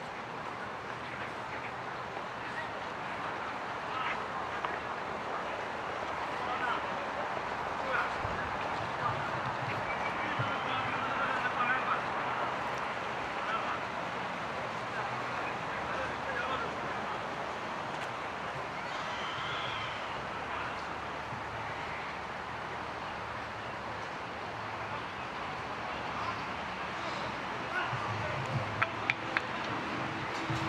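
Outdoor ambience: a steady hum of distant city noise with faint, indistinct voices, and a few sharp clicks near the end.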